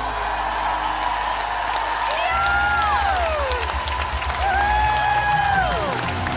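Studio audience applauding and cheering over the closing bars of a live band-backed pop song. Long high held notes bend down in pitch twice, once around the middle and once near the end.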